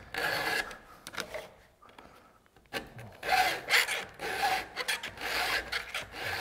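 Chainsaw chain being hand-filed with a Stihl file guide. Its round file sharpens the cutter teeth while a flat file lowers the depth gauges in the same pass. It makes a series of rasping file strokes, with a short pause about two seconds in before the strokes resume.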